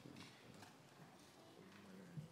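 Near silence in a large hall: faint scattered footsteps and shuffling, with a faint low murmur of voices, as the press leaves the room.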